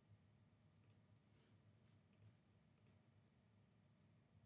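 Near silence over a low steady room hum, broken by three faint computer mouse clicks, the first about a second in and two more a little apart later on.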